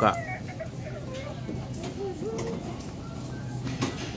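Supermarket aisle background: a steady low hum with faint, indistinct voices after one spoken word at the start, and a short knock just before the end.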